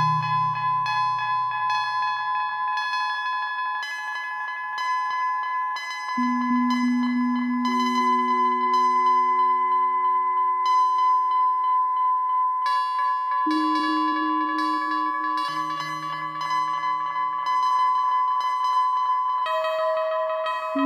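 Eurorack modular synthesizer playing a slow generative ambient piece in two voices: sustained high tones with many short repeating echoes from heavy delay, over long low notes that move to a new pitch every few seconds.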